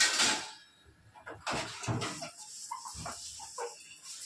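Kitchen tap water running into a steel sink, cut off about half a second in. Then short clinks and clatters of stainless-steel plates being handled at the sink, with a couple of brief high calls near the end.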